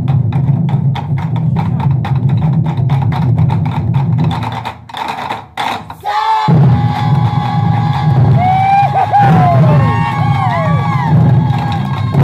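Ensemble of Japanese taiko drums struck with sticks: fast, steady beats that thin out to a few strikes about five seconds in, then the drumming picks up again. Over the second half a held high tone and several rising-and-falling sliding calls sound above the drums.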